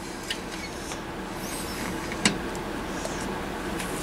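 Steady electrical hum from a variac and the tube power supply it feeds, with a couple of light clicks as the variac knob is turned down.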